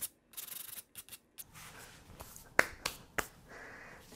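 Hands brushing and rubbing across a fabric drop cloth on a worktable, with a few sharp light clicks in the second half.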